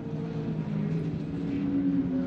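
Engines of several racing pickup trucks running together through a corner, several engine notes at once, growing slightly louder.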